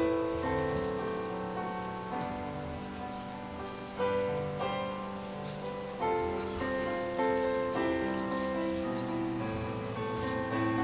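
Electronic keyboard playing slow, held chords that change every second or two, with a light crackling patter over it.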